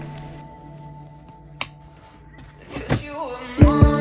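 Background music fades down. About one and a half seconds in, a car-seat harness buckle gives a sharp click as its tongues latch, and there is another click near three seconds. The music then comes back with a heavy beat.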